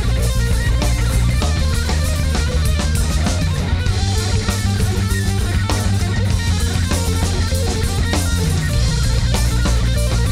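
Live rock band playing: an electric guitar lead over bass guitar and drum kit.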